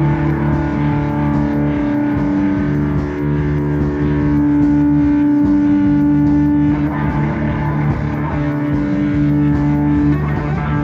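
Indie-pop band playing live, with electric guitars over a bass line and a long held note that drops out about seven seconds in and comes back.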